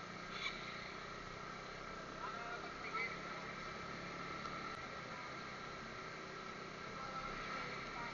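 Motorcycle riding along a street, heard through a cheap helmet-mounted action camera's built-in microphone: steady engine and road noise with a thin steady whine, and a few short louder sounds about two to three seconds in.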